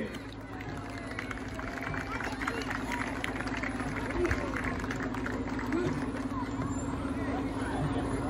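Crowd chatter along a street, with a fire engine running steadily as it slowly approaches, growing gradually louder.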